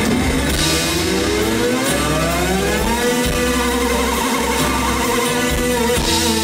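Live rock band playing an instrumental passage: a synthesizer-like tone glides steadily upward in pitch over about three seconds and then holds, over a sustained low bass drone.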